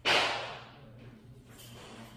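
A single sharp swoosh that starts suddenly and fades away within about half a second, of the kind dropped in as a transition sound effect at a video edit.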